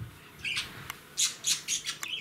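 A bird squawking in short, harsh calls: one about half a second in, then a quick run of four after a second in.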